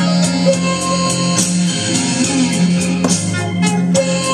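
Guitar playing blues lines over a steady, sustained low backing tone, with no singing.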